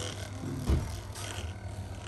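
Handheld percussion massage gun running with a low, steady buzz as its ball head is pressed against the arm and shoulder, with one low knock a little under a second in.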